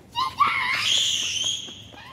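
A young child's high-pitched scream, rising in pitch at the start and held for about a second and a half.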